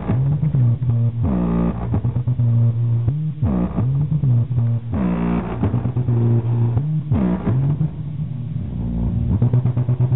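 Bass-heavy music played loud through a GAS 8-inch speaker fitted in a scooter's underseat compartment and driven by a GAS amplifier. The deep bass notes slide down in pitch every second or two.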